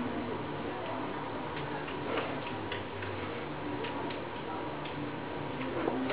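Steady room hum with faint, irregular small clicks and taps scattered through it, a few each second.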